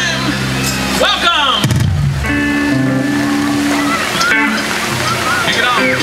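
Live rock band playing amplified electric guitars, bass, drums and keyboard. A wavering held note ends as it begins, a falling glide follows about a second in, then a sustained chord rings, with voice over the music.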